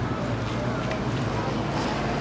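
Faint voices of people talking, over a steady low rumble on the camcorder microphone.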